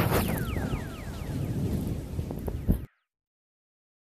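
Low rumbling background noise with a quick run of about six short falling whistles in the first second and a half. It cuts off abruptly just under three seconds in, leaving dead silence.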